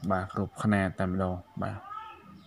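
Speech: one person talking. Near the end comes a short, higher-pitched sound that rises.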